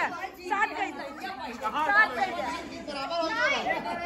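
A group of people talking and calling out over one another, many voices overlapping at once.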